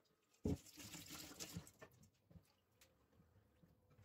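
A single knock about half a second in, then about a second of faint splashing water, as of water being poured into a mug for the dish, followed by a few light clicks.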